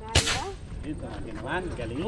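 A single air rifle shot fired at a fish in the creek, a sharp report just after the start with a brief ring-off.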